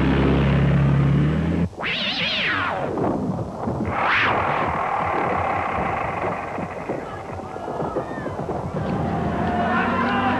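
A jeep engine running steadily, cut off abruptly a little under two seconds in, followed by two long, falling monster shrieks a couple of seconds apart, with a noisy din under them.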